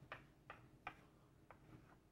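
Chalk writing on a blackboard: a few faint, sharp, irregular taps and short scratches as symbols are written.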